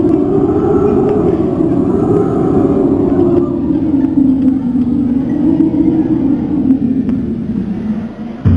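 Loud low droning rumble whose pitch slowly rises and falls, dropping away at the very end.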